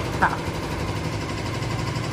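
Steady low mechanical hum, like an engine running at idle.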